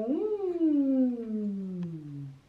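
A man's voice drawing out one long wordless note that rises briefly, then slides steadily down in pitch for about two seconds, like a low hum or a drawn-out "oooh".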